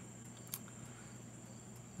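Faint, steady chirring of crickets and other night insects, with one soft click about a quarter of the way in.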